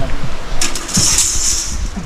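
Galvanised cold-formed steel framing pieces being handled during unloading: a hissing metal scrape lasting about a second, starting about half a second in, with sharp knocks at the start and about a second in.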